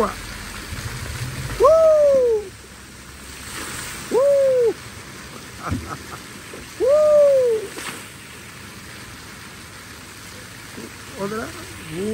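Water jets of a large fountain splashing steadily, with three loud hoot-like calls, each gliding up and then down in pitch, about two and a half seconds apart.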